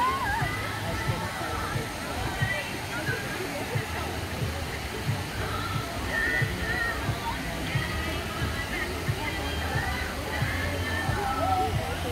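Steady rushing of churning white water in a river-rapids ride channel, mixed with background music and distant voices.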